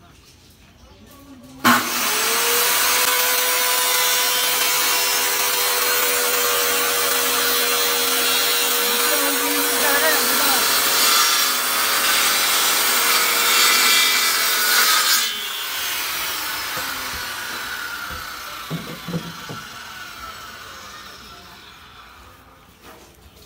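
Handheld corded circular saw starting up about two seconds in and cutting through a wooden board for some thirteen seconds, with a steady motor whine under the cutting noise. After the cut the sound drops and fades out over several seconds as the saw slows.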